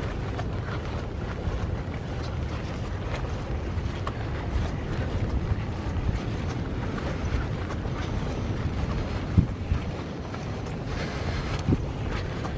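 Wind buffeting the camera microphone, a steady low rumble, with two short sharp knocks, one about nine seconds in and one near the end.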